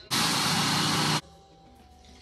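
Personal blender motor running in one short burst of about a second, starting and stopping abruptly, blending a protein shake.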